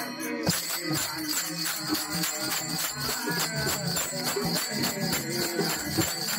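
Bhajan accompaniment: a hand-played pakhawaj and dholki drumming in a fast, steady rhythm, with small hand cymbals (tal) jingling on the beat. The cymbals drop out briefly at the start and come back in about half a second in.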